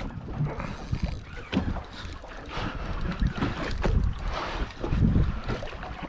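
Wind buffeting the microphone and water against the boat's hull, broken by irregular knocks and rubs from handling the rod and reel while a fish is being fought.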